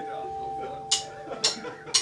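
Steady amplifier tone from the band's guitar rig, with three sharp clicks about half a second apart in the second half: drumsticks counting in the next song.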